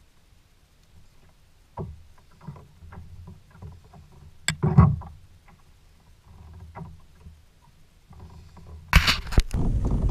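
Quiet handling noises of a largemouth bass being unhooked with a tool in a kayak: scattered small clicks and rustles, with one louder sharp click and knock about halfway through. Near the end a loud rush of wind on the microphone comes in.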